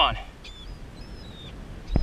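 Faint, thin, high calls of seabirds, a few short chirps that slide downward, over steady wind and water noise. A single sharp knock comes just before the end.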